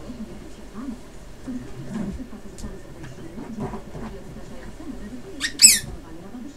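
A small pinscher going after a ball under a couch, with faint scuffles and a sharp, high double squeak near the end, the loudest sound.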